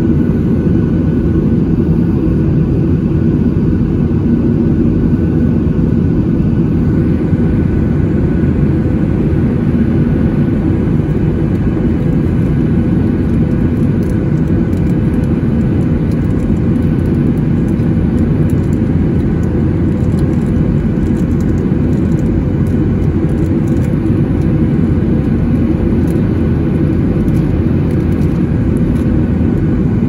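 Steady cabin noise of a Boeing 737-900ER in flight, heard from a window seat over the wing: the deep rumble of its CFM56 turbofan engines and rushing airflow, with a faint steady high tone above it.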